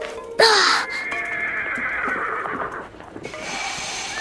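Horses whinnying: one long whinny starts about half a second in, and another begins near the end, over background music.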